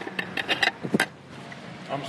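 Cutlery clinking against a plate while eating, a quick run of sharp clicks in the first second or so.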